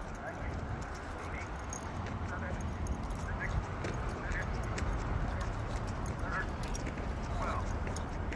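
Faint synthesized voice from a Polara N4 accessible pedestrian push button counting down the remaining crossing seconds, one number about every second, over a steady low outdoor rumble.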